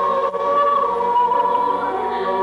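Mixed choir of men's and women's voices singing, holding long sustained chords.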